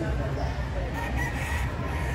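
A rooster crowing about a second in, over a steady low background hum.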